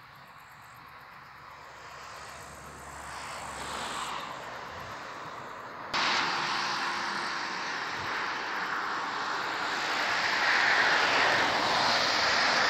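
A car coming along the road: its tyre and engine noise swells as it draws nearer, after a sudden jump in level about halfway through. Before that, a fainter rising rush from an electric passenger train running past at a distance.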